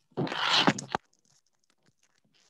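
A brief burst of rustling and scraping close to a microphone, lasting under a second and ending in a sharp click.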